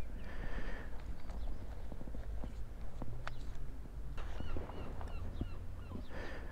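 Footsteps on a concrete path, irregular sharp steps over a steady low rumble of wind on the microphone.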